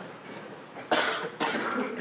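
A person coughing twice, about a second in, in a reverberant hall.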